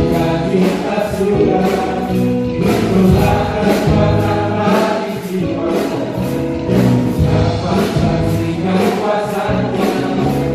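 Live church worship band and singers performing an upbeat Indonesian-language gospel chorus, voices singing together over a steady drum beat.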